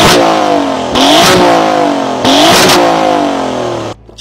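Alfa Romeo Giulia Quadrifoglio's Ferrari-derived 2.9-litre twin-turbo V6 being revved while stationary, heard from behind at the exhaust. A rev dies away at the start, then the engine is blipped twice more, about a second apart. Each time it climbs quickly and falls back slowly.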